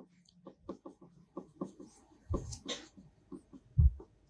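A marker pen writing on a white board: short scratches and taps of the tip, several a second. A couple of louder low thumps come about halfway and near the end.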